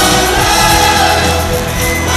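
Live orchestra and rock band playing loudly together, with several voices singing.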